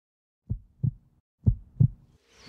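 Heartbeat sound: two low lub-dub beats about a second apart.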